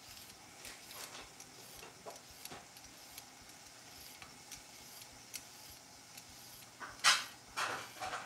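Quiet kitchen with faint scattered ticks. About seven seconds in come two loud knocks of a chef's knife on a cutting board as it is picked up and set to cut.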